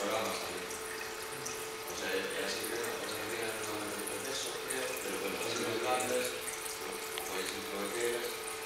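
Water running steadily from a tap into a sink.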